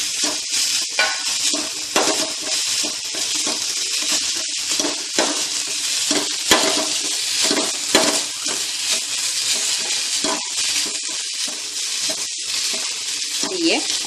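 Beetroot with onion, green chilli and curry leaves sizzling in coconut oil in a steel pan, stirred with a spatula that taps and scrapes irregularly against the pan.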